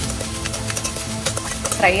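Chopped onions sizzling in hot oil in a stainless steel kadai, with a slotted metal spoon scraping and clicking against the pan as they are stirred.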